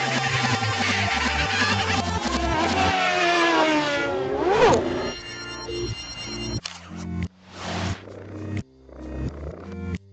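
Cartoon soundtrack: music over a vehicle engine sound effect whose pitch slides up and down for about the first four and a half seconds, ending in a quick rising-and-falling glide. The music then carries on alone, sparser, with short separate bass notes.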